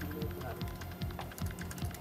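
News background music bed, low in level, with a quick, clicking rhythm like keyboard taps over a low repeating pulse.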